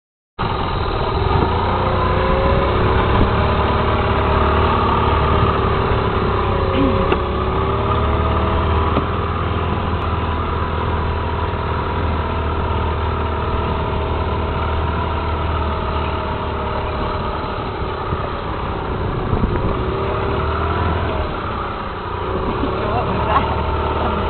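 Vehicle engine running with a steady low rumble, its pitch drifting gently up and down as it drives.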